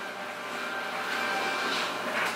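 A steady rushing noise with a faint hum, getting slightly louder over the first second.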